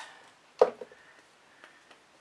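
A single sharp knock about half a second in, followed by two faint ticks: a paint tool struck against a bucket to knock the paint off it.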